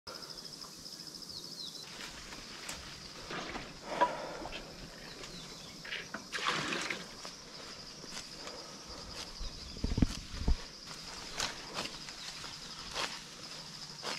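Outdoor rural ambience: a steady high-pitched insect drone, with scattered rustles and steps in grass and a brief low thump about ten seconds in.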